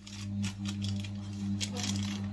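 A steady low electrical hum, like a household appliance running, starts as the talk stops and holds at one even pitch, with light rustling of a paper receipt being handled.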